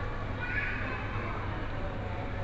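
Store ambience in a supermarket produce aisle: a steady low hum, with a brief higher-pitched sound about half a second in.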